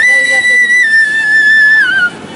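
Bamboo flute holding one long, high note that slips a little lower about a second in and drops again just before it breaks off at the end.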